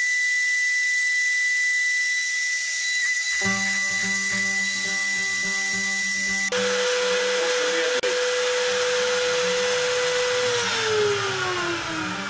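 Self-built CNC router starting up: the trim-router spindle comes on with a steady high whine over a hiss. About three seconds in, a lower hum from the stepper drives joins as the machine begins to move. Near the end a steady tone slides down in pitch.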